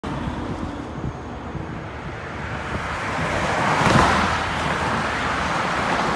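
Road traffic passing close by on a multi-lane road, a vehicle's tyre and engine noise swelling to a peak about four seconds in.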